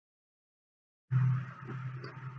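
Silence for about the first second, then a steady low hum with faint hiss cuts in suddenly: room background noise as the recording resumes.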